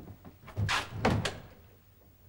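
A door being opened and then shut, ending in a solid thump a little after a second in.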